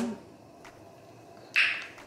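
A pause in a woman's speech: quiet room tone with a faint click, then a short breathy exhale, like a tired sigh, near the end.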